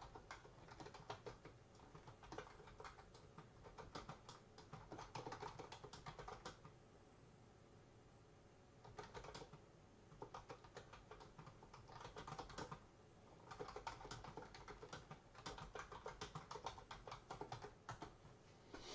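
Faint computer-keyboard typing in bursts of rapid keystrokes, with a pause of a couple of seconds near the middle.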